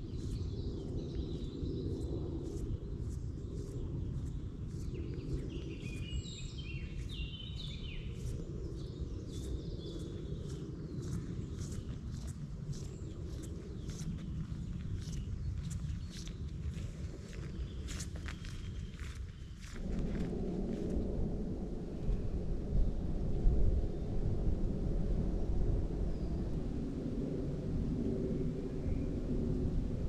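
Footsteps on a woodland path at a steady walking pace, about two a second, with small birds chirping in the first part, over a low wind rumble on the microphone. About twenty seconds in the sound changes abruptly to a louder, steady wind noise.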